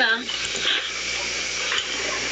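Small handheld gas torch burning with a steady hiss while silver earrings are soldered.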